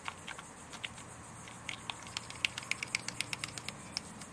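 Light, irregular clicks and ticks of a thin stirring stick tapping and scraping against the sides and bottom of a small plastic cup while mixing liquid silicone, coming more often in the second half.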